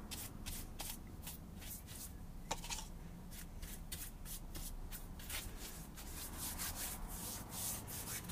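A brush scrubbing and dabbing a wax-in-white-spirit release coat onto a plastiline sculpture: a steady run of short scratchy strokes, about three a second, as the surface is coated before fibreglass moulding.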